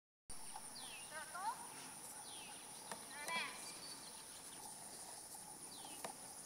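Summer field ambience: a steady high-pitched insect drone with scattered bird calls. There are short downward-sweeping whistles three times and a quick burst of chirps about three seconds in.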